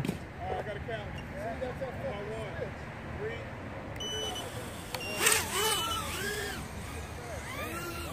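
Distant voices of people talking across an open field, with a short electronic beep about four seconds in and another a little more than a second later, and voices briefly louder around the second beep.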